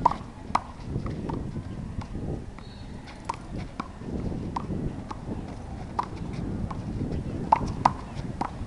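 A one-wall handball rally: the small rubber ball is slapped by hands and hits the concrete wall and court, making a string of sharp pops at an uneven pace of roughly one to two a second.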